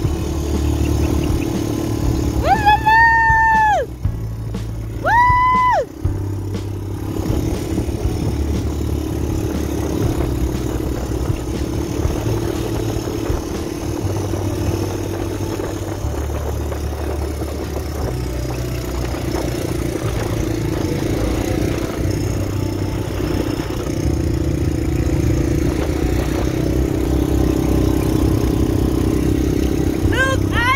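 Quad bike engine running steadily under way over sand, its drone stepping up and down with the throttle. Two loud, high-pitched held tones sound over it about three and five seconds in.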